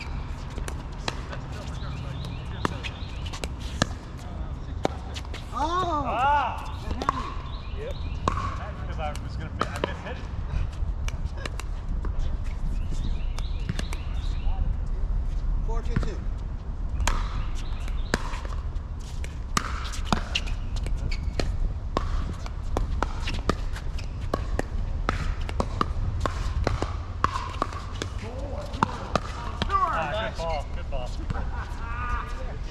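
Pickleball paddles hitting the hard plastic ball: a string of sharp, irregularly spaced pops from the rally and from games on neighbouring courts.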